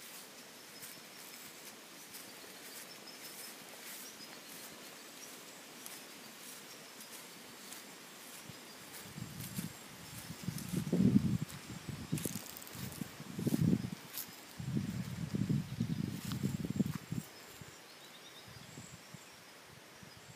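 Quiet outdoor ambience with faint, high, scattered ticking. From about halfway through, a stretch of irregular low rumbling and thumping comes and goes, louder than anything else.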